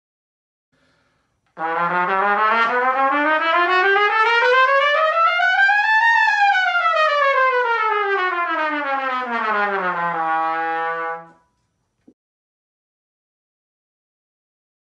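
A trumpet plays a fast, unbroken scale that climbs steadily over about two and a half octaves, turns at the top and runs straight back down, ending on a briefly held low note.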